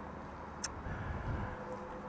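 Faint outdoor background noise: a low, even rumble with one brief click about two-thirds of a second in.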